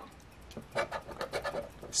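A round scratcher disc scraping the coating off a scratch-off lottery ticket in quick, short, repeated strokes, starting a little under a second in.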